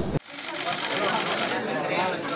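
Many camera shutters clicking rapidly and continuously over a low crowd murmur. It begins abruptly a moment in.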